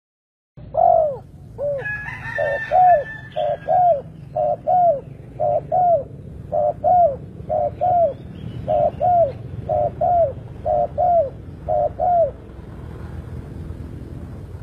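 Spotted dove (tekukur) cooing: a run of about a dozen repeated two-note coos, roughly one a second, stopping a little after 12 seconds in. Higher chirps sound briefly over the first few coos, over a steady low rumble.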